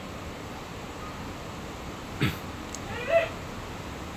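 Two short sounds over quiet room noise: a brief knock a little over two seconds in, then, about a second later, a short high-pitched cry.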